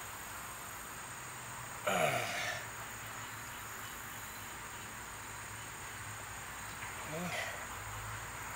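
Steady, high-pitched drone of insects in the background, with a hesitant spoken "uh" about two seconds in and a brief strained vocal sound near the end.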